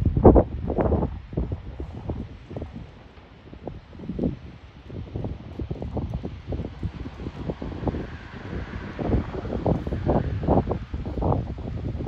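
Wind buffeting the microphone in uneven gusts, with a low rumble underneath. The gusts are strongest just after the start and again near the end.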